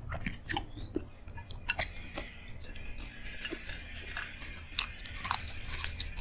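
Close-miked eating sounds: a person chewing a mouthful of rice and side dishes, with wet mouth clicks and occasional crunches.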